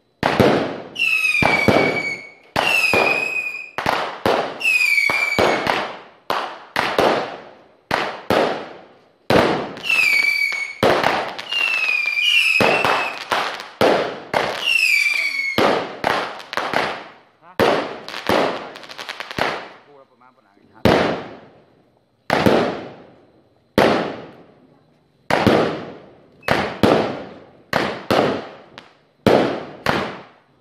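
Fireworks fired shot after shot from the ground: a sharp bang roughly every second, each dying away. Through the first half, many shots carry a short high whistle that dips slightly in pitch.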